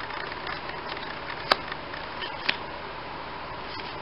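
Trading cards being handled and shuffled from front to back in the hands: faint card rustling with two sharp clicks about a second apart, over a steady hiss.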